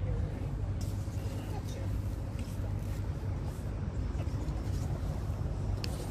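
Faint voices of people talking over a steady low rumble.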